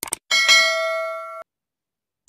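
Sound effect of a notification bell being clicked: a quick double mouse click, then a bright bell chime with several ringing tones that lasts about a second and cuts off abruptly.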